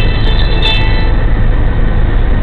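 A vehicle engine runs with a loud, steady low rumble, with a small click about two-thirds of a second in.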